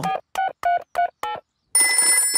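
Cartoon phone keypad beeping as buttons are pressed, a quick run of about six short beeps, then a telephone ringing starts near the end with steady high tones.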